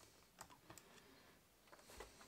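Near silence with a few faint clicks and taps from the plastic top cover of an Xbox One power brick being handled as it comes off the case.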